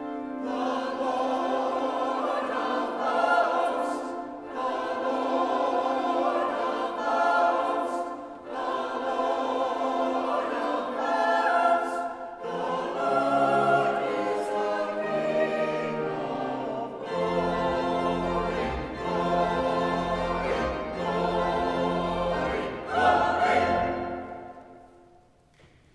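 Church choir singing in parts. Deep, sustained bass notes from the accompaniment join about two-thirds of the way through, and the music ends near the end.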